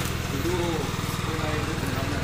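A small engine idling steadily with an even, fast pulse. Faint voices underneath.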